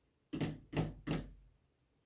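Three dull knocks from the wooden parts of a Schacht Cricket rigid heddle loom being handled, about 0.4 s apart, in the first second and a half.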